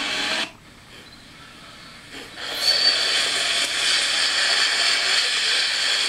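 Steady, loud hissing noise that drops away about half a second in and comes back about two and a half seconds in.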